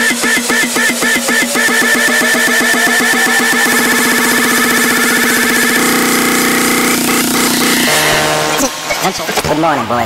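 Uptempo hardcore electronic music in a build-up with the kick drum dropped out. A rapid roll speeds up into a continuous buzz under a sound rising in pitch, cuts off about eight seconds in, and a voice follows near the end.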